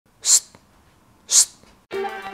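Two short, sharp hissing bursts about a second apart, then guitar music starts right at the end.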